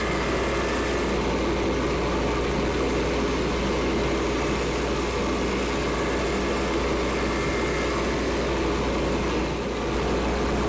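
Small wood lathe running steadily, spinning a stabilized-wood pen blank on a mandrel while a hand-held turning tool works against it. The sound dips briefly near the end as the tool comes away.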